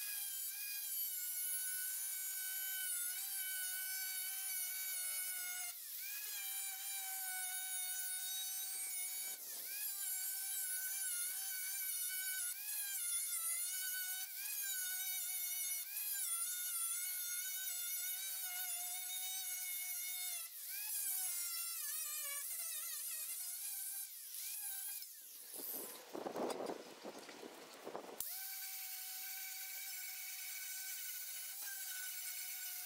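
Angle grinder with a thin cut-off disc cutting rusty sheet steel along a scribed line: a steady high whine whose pitch dips briefly now and then as the disc bites. Near the end the whine gives way for a couple of seconds to a harsher, rougher noise, then the steady whine resumes.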